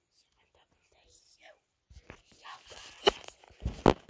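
Phone being handled close to its microphone: rubbing and rustling, with two sharp knocks about three and four seconds in.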